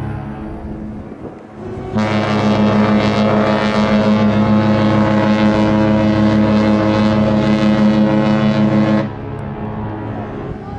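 The cruise ship AIDAdiva's horn sounding one long, loud, steady blast of about seven seconds, starting about two seconds in, as a departure signal while the ship leaves port. The echoing tail of an earlier blast fades out at the start.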